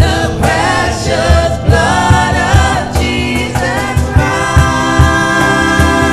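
Live gospel worship song: a woman singing lead with backing singers, over electric keyboard chords and a steady low percussion beat.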